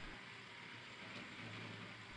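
Faint steady hiss, close to silence.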